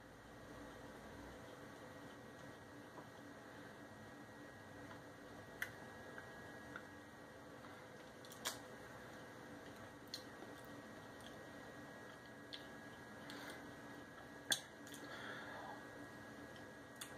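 Quiet chewing of a piece of chocolate candy bar, with a few short sharp clicks spread through it, over a faint steady hum.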